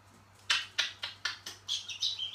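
African grey parrot making a rapid run of sharp clicking, smacking sounds, about seven in a second and a half starting about half a second in, with a short high whistle near the end.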